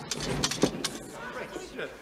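Courtroom crowd on a film soundtrack murmuring and stirring between the judge's lines, with whispers and rustling.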